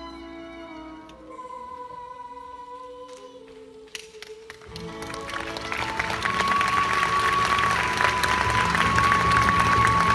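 Soft closing notes of a stage musical's pit orchestra, with a long held tone, end the song. About halfway through, a theatre audience's applause breaks out and swells to a loud, steady ovation while the orchestra keeps playing underneath.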